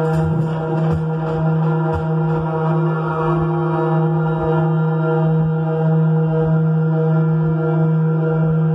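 Live electronic drone music: a steady low hum held without a break, rich in even overtones, with soft irregular low thumps beneath it.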